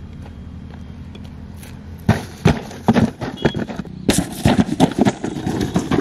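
A run of sharp, irregular knocks and scrapes on rocky ground, starting about two seconds in, over a steady low rumble of wind on the microphone.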